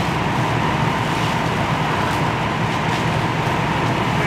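Fire apparatus diesel engines running steadily as they drive the pumps that feed the hoselines and ladder pipe, with a low hum, a thin steady tone and an even hiss of water spray.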